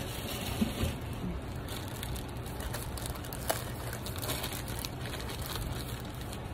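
Plastic packaging bag crinkling and rustling in the hands, a run of small irregular crackles, as a piece of clothing is unpacked from it, over a steady low hum.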